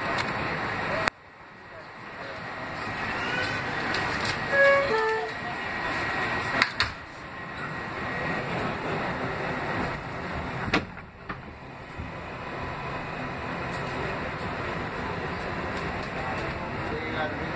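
Kawasaki R188 subway car pulling out of a station: running noise from the motors and wheels builds as it gathers speed. There is a sharp click about a second in, a few short stepped tones shortly after, and two sharp knocks later on.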